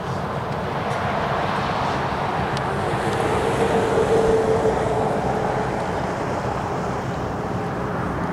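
Steady outdoor background noise, with a faint droning hum that comes in about three seconds in and fades out by about six seconds.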